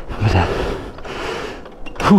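A man breathing hard from the effort of pushing a motorcycle that won't start, with a short voiced exhale about a quarter of a second in, over a steady rushing noise.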